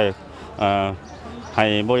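Speech only: a person talking in Lao, two drawn-out syllables with short pauses between them.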